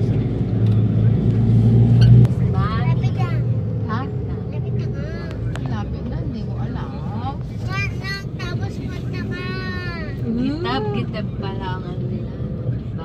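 Motorcycle engines and road noise while riding, with a truck passing close by in the first two seconds; the rumble drops suddenly once it has gone by.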